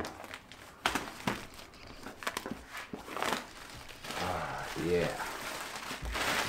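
Hands handling a cardboard product box: a few sharp taps and knocks on the cardboard in the first half and crinkling of packaging as the tape is worked at.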